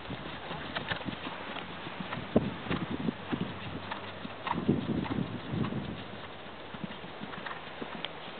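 A horse's hooves on sand arena footing as it lands from a jump and canters on: a run of dull hoofbeats, loudest a couple of seconds in and again around the middle, fading out near the end.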